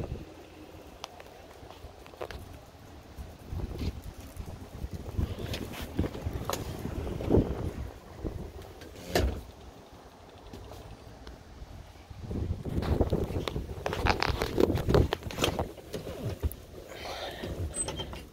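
Handling and movement noise of someone climbing into a car's driver seat: scattered knocks, clicks and rustles over a low rumble, with a louder thump about nine seconds in and a cluster of knocks later on.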